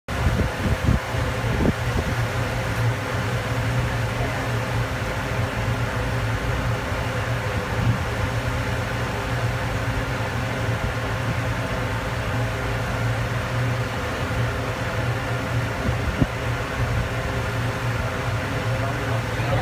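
Ferry's engine running with a steady low drone, a few short knocks about a second in and once more near the end.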